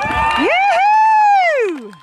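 A spectator close by letting out one long, loud cheering whoop that rises quickly, holds high, then slides down in pitch near the end.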